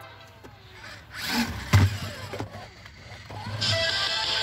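Toy remote-control stunt car's small electric motor running in short spurts, with a sharp knock a little under two seconds in. Background music comes back near the end.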